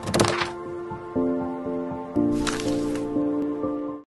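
Intro jingle: held synthesizer chords that change twice, with a sharp hit and swish near the start and another swish about two and a half seconds in. It cuts off suddenly at the end.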